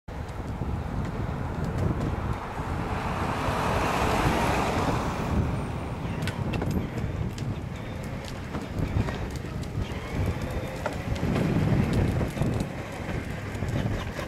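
Wind buffeting the microphone, with the rolling rattle of a battery-powered Power Wheels Lightning McQueen ride-on toy car's plastic wheels on a concrete sidewalk. Short clicks come more often in the second half as the car draws near.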